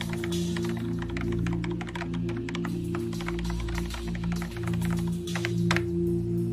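Quick, irregular keystrokes typed on a computer keyboard, over a low sustained drone of background music; the typing stops near the end.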